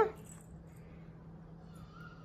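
Quiet room tone with a faint steady low hum. A child's high, sliding vocal call cuts off right at the start.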